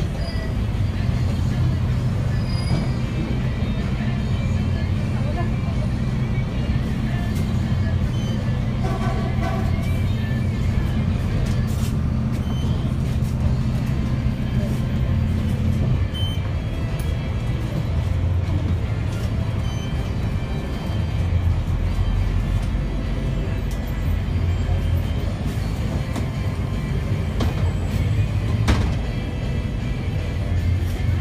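Engine and road noise from inside a moving city bus: a steady low drone whose note changes about halfway through, as the bus eases off or shifts.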